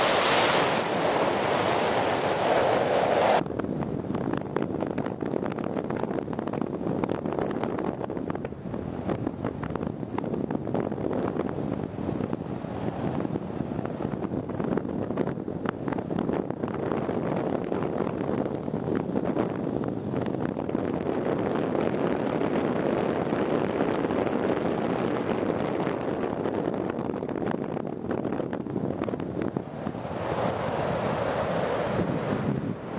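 Wind rushing over the camera microphone during a paraglider flight, a steady noise with no tones in it. It is louder and brighter for the first three seconds or so, then drops suddenly to a lower, even rush.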